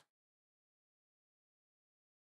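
Near silence: the audio drops out almost completely.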